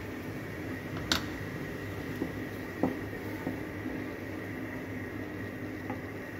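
Jaggery syrup with lemon pieces simmering in an aluminium kadhai on a gas stove: a steady hiss with a low hum, and two faint clicks about one and three seconds in.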